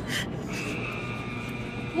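Automatic car wash dryer blowers running, heard from inside the car: a steady whine comes in about half a second in over a low hum.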